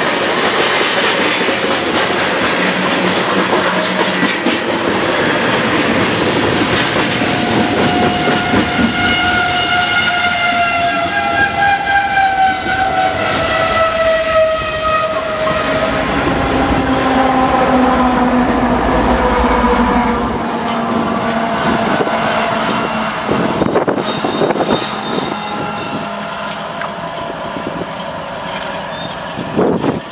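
A long freight train of tank cars rolling past, its wheels clattering steadily over the rail joints. From about a quarter of the way in, a drawn-out tone of several notes slides slowly down in pitch for several seconds. Just past halfway the rear GE ES44AC distributed-power locomotive's diesel engine passes with a deep low hum, and the train sound then eases off.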